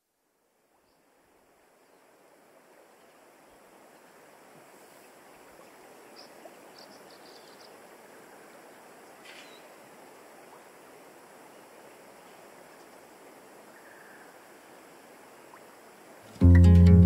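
Faint, steady rushing noise, like running water or outdoor ambience, slowly fading in from silence over the first few seconds. A few brief high chirps and a click come near the middle.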